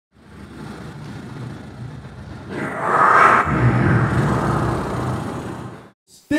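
A low rumbling intro sound effect that swells into a whoosh, loudest about three seconds in, then fades out.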